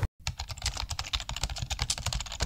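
A quick, steady run of key clicks from typing on a smartphone's on-screen keyboard, starting after a split-second of silence.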